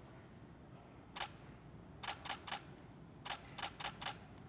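DSLR camera shutter firing seven times: a single shot about a second in, then two quick runs of three shots each.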